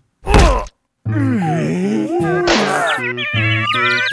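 A cartoon crash: one loud, hard thud of a body hitting the ground, followed by a wavering, pitch-bending groan. About three seconds in, bouncy staccato music starts.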